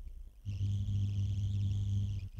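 A low, steady hum held for under two seconds, starting about half a second in.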